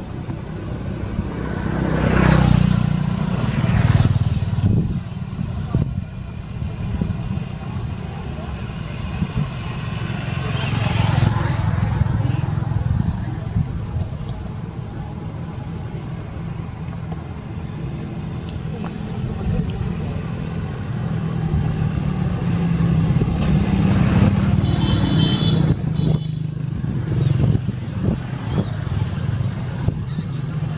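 Steady low rumble of passing motor vehicles with faint voices. It swells a couple of seconds in and again after about 23 s.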